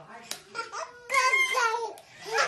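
Two babies babbling with high-pitched, excited cries in short bursts, the loudest cry lasting under a second starting a little past halfway.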